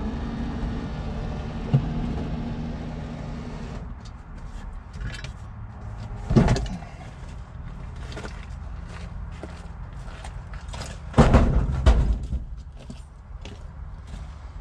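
Knocks, clunks and rustling as a power seat is handled and lifted out through a truck door, with a sharp knock about six and a half seconds in and a loud cluster of knocks around eleven to twelve seconds. A steady low hum runs for the first four seconds, then stops.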